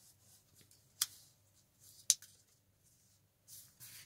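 A sheet of sticky-note paper being folded and creased by hand: faint paper rustling with two sharp clicks about a second apart.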